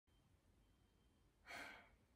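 Near silence, then about one and a half seconds in a woman takes one short, audible breath, the singer's breath before her first phrase.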